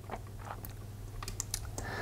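Faint clicks of the push buttons on a Lenze SMD drive's keypad being pressed, several in irregular succession.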